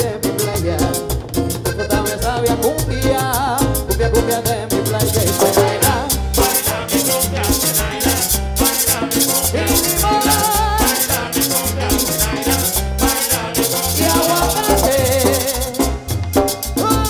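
Live Colombian dance band playing, with accordion and Latin percussion over a steady, pulsing bass beat.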